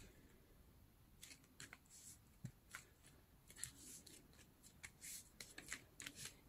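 Near silence, with faint, scattered rustles and light taps of paper being pressed and smoothed down by hand.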